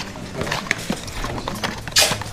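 Cardboard light-bulb boxes being handled and knocked against each other while sorting through a box of them: irregular light taps and clicks, with a sharper knock near the end.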